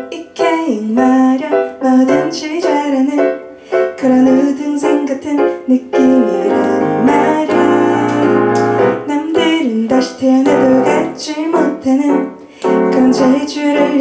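Kurzweil digital stage piano played with both hands, starting sharply at the beginning and running on as the intro of a slow ballad.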